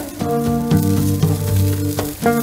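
Tomahawk steak sizzling on a charcoal grill grate, a steady fine crackle, heard under background music with a melody and bass line.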